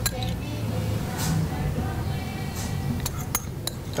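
Metal spoon clinking against a ceramic bowl and platter while serving a sticky fruit topping: one sharp clink just after the start, then three or four quick clinks near the end.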